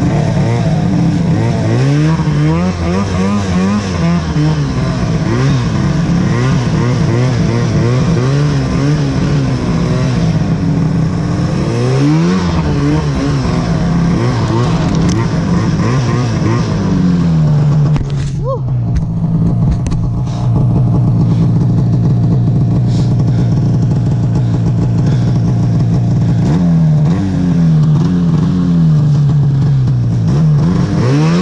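Arctic Cat snowmobile engine revving up and down over and over as it pushes through deep powder snow. About eighteen seconds in, the throttle drops briefly, then the engine holds a long, steady high-rev pull before the revs start rising and falling again near the end.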